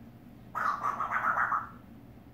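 African grey parrot calling: a single fast, pulsing call about a second long, starting about half a second in.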